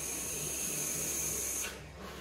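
Steady hiss of a long draw on a box-mod vape, air pulled through the rebuildable atomizer while its 0.2-ohm Clapton coil fires at about 62 watts. It stops abruptly a little before the end.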